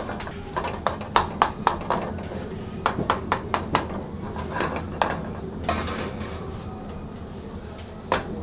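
A metal ladle clinking and knocking against a steel pan as curry is stirred and tossed over a gas burner, in quick runs of clinks with single knocks later, over a steady low kitchen hum.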